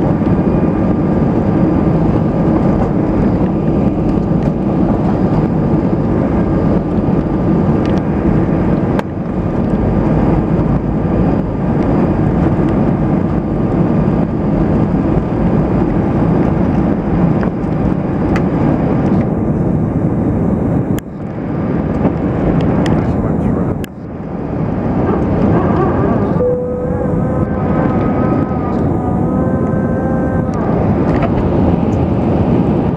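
Jet airliner's engines at takeoff power heard from inside the cabin, a loud steady rushing noise with faint high whine tones, through the takeoff roll and lift-off. There are two brief dips in loudness about three quarters of the way through, and a few steady pitched tones come in near the end.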